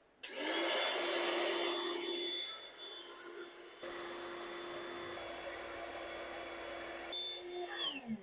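Intex airbed's built-in electric air pump running steadily with a constant hum, blowing air in to inflate the mattress. Near the end it is switched off and winds down, its pitch falling as it stops.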